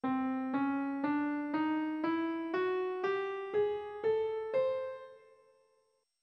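Piano playing the nine-tone scale 991 (Aeolygic) ascending one note at a time, about two notes a second, from middle C to the C an octave above: C, C♯, D, D♯, E, F♯, G, G♯, A, C. The last note rings on and fades out a little after five seconds in.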